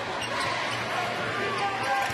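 Arena sound of a live basketball game: a steady crowd murmur with scattered voices, and a ball being dribbled on the hardwood court.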